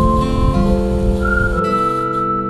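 Background music: a whistled melody over acoustic guitar, the high tune holding long notes and stepping up to a new one about a second and a half in.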